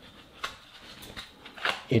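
Quiet rustling of black packaging being handled, with a few light clicks, as a USB-C charging cable is taken out of it.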